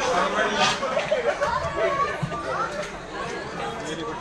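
Indistinct chatter of several voices in an auditorium audience, with no music playing yet.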